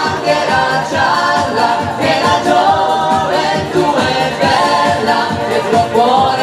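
A female and male vocal duo singing live into microphones over a backing track with a steady beat.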